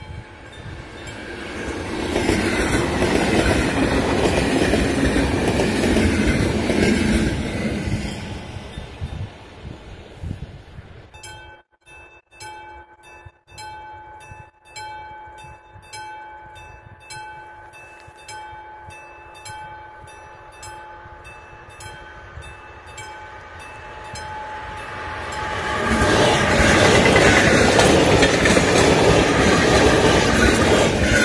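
ZSSK class 460 electric multiple unit passing loudly in the first seconds. After that a level-crossing warning signal rings in evenly repeated strokes, and near the end a second class 460 train passes over the crossing, loud again.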